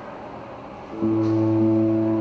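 A skater's program music begins about a second in, opening with long held low notes.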